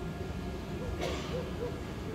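Casino slot-machine floor: a steady low hum with a few short low tones about a second in, as the machine's line buttons are pressed.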